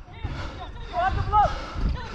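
Footballers shouting during play, their voices fainter and farther off, strongest about a second in, over a low rumble and irregular thuds on the body-worn microphone.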